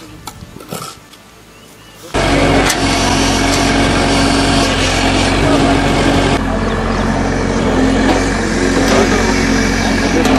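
A loud, steady engine-driven machine running with a constant hum over rough mechanical noise, cutting in suddenly about two seconds in.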